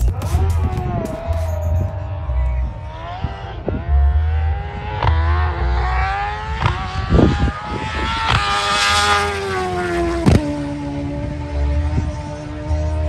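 High-revving sport motorcycle engine accelerating hard down a drag strip, its pitch climbing and dropping back at each gear change, over background music with a heavy beat.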